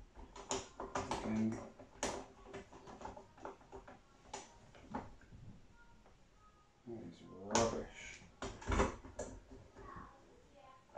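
Small, sharp clicks and knocks of plastic and metal handle parts being handled as a snap bolt is fitted and tightened on a folding lawn-tool handle.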